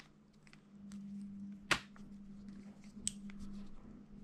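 Faint clicks and light handling noise as a charging cable is wound around a plastic cable-organizer base, with a sharper click near the middle and another about three seconds in. A faint steady low hum runs underneath.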